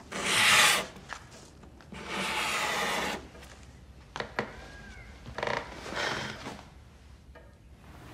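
A pencil scratching across a paper map as a border line is drawn: a short loud stroke, then a longer one about two seconds in, followed by a few faint scrapes of the paper.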